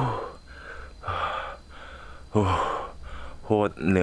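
A man breathing hard, with heavy gasping breaths between short breathy "oh" exclamations: he is out of breath from climbing a steep mountain trail.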